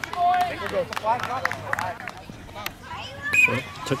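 Indistinct voices talking on a playing field, with the start of a call from a coach right at the end.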